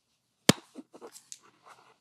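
One sharp knock about half a second in, then a second of smaller scuffs and rustles: a person getting up off a tiled floor.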